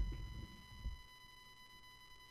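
A faint, steady, high-pitched electrical buzz from the microphone's audio chain: a few even tones stacked one above another, which the streamer blames on the audio mixer. Some low handling rumble dies away in the first half second.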